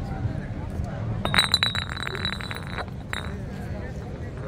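Rapid metallic chinking with a high ringing tone for about a second and a half, then one more short chink, over the murmur of a crowd.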